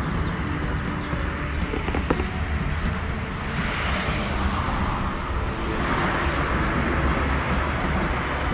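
Outdoor road traffic: a steady low rumble with two vehicles passing, each swelling and fading, about three and a half and six seconds in.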